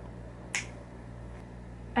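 A single short, sharp click about half a second in, over a steady low room hum.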